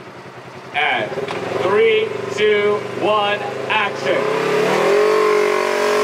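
Off-road camera buggy's engine accelerating, rising in pitch about four seconds in and then holding a steady run. Shouting voices come before it.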